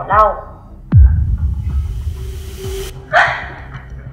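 Dramatic sound-effect hit: a sudden deep boom about a second in, its pitch dropping fast into a low rumble that fades over about two seconds, with a short rushing burst near the end.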